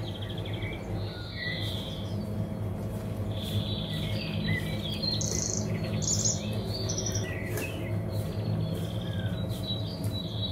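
Birds chirping: many short, high calls scattered throughout, over a steady low hum.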